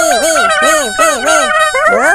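Several high-pitched, sped-up cartoon character voices babbling excitedly at once in nonsense syllables, with arched rising-and-falling pitches repeating about four times a second and a squawky, almost clucking quality.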